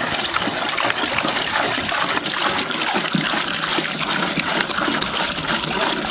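Camel milk pouring in a thick, steady stream from a plastic jerrycan into a large aluminium pot already part-full of frothy milk, splashing as it lands.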